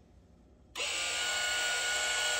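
Steady electric motor buzz of a vibration machine's foot platform, switching in about a second in after a brief dead silence.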